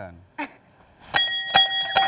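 Quiz-show answer buzzer pressed about a second in, setting off a loud novelty sound effect: steady ringing tones over a regular beat of sharp clicks, a few each second.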